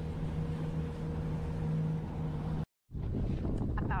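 Outboard motor on a small jon boat running at a steady pitch under way, with water rushing along the hull. About two-thirds in the sound cuts out for a moment, and after that the motor hum is gone, leaving wind buffeting the microphone over choppy water.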